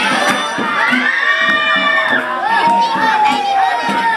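A crowd of children shouting together in long drawn-out group calls, one long call falling in pitch in the second half.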